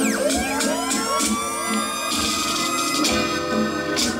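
A reggae dub tune playing loud through a sound system, with a dub siren effect over it: one fast falling sweep at the start, then a run of quick rising whoops.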